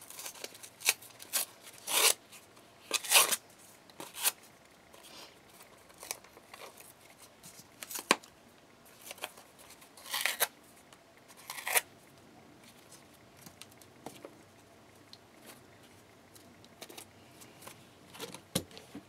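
Cardboard being torn by hand: irregular short rips as its edges and layers are pulled away, loudest in the first few seconds and again about ten to twelve seconds in, with quieter rustling of the board between.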